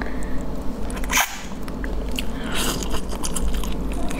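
Crackling and snapping of a raw marinated shrimp's shell being peeled by hand, with a sharp crack about a second in, then biting and chewing on the shrimp.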